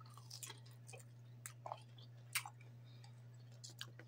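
A person chewing a bite of chicken nugget: faint, irregular soft clicks and wet mouth sounds over a steady low hum.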